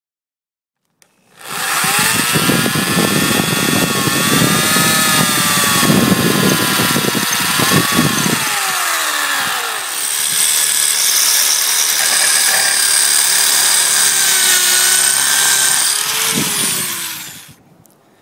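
Electric drill boring into concrete with a masonry bit. The motor's pitch rises and falls as it loads up. It starts about a second in and stops shortly before the end, and the cheap bit melts down from the work.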